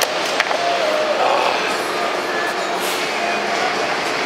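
Steady street background noise with faint voices mixed in, and a single light click about half a second in.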